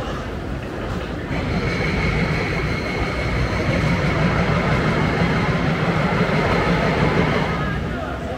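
A train running past with a low rumble and a steady high whine, starting about a second in and fading near the end, over crowd chatter.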